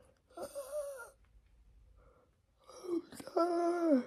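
A woman breathing out a puff of smoke with a breathy, voiced exhale, starting about half a second in. After a short quiet pause she makes a longer drawn-out tired groan, which falls in pitch as it ends.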